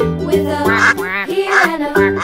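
Children's song music with two cartoon-style duck quacks over it, about 0.8 s apart.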